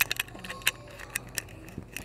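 Fingers fiddling with a metal neck chain and a small clip-on object at the chest, right by the microphone: a string of irregular sharp clicks and light rattles, about seven in two seconds.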